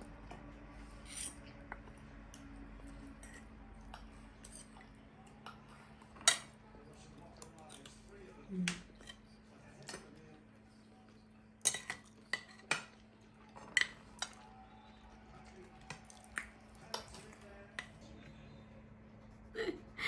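Metal spoon and fork clinking and scraping against a ceramic plate during eating, with sharp clinks at irregular intervals and the loudest ones in the middle. A faint steady hum runs underneath.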